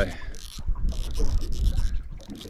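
Spinning reel being worked by hand: irregular mechanical clicks and ticks from its bail arm and gearing, over a low wind rumble.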